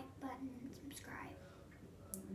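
A young woman's soft, partly whispered speech, trailing off quieter toward the end.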